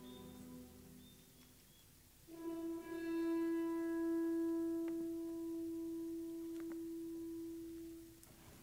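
Film soundtrack music played in the hall. Quiet scattered tones give way, about two seconds in, to one long held low note with its overtones, which eases off slightly toward the end.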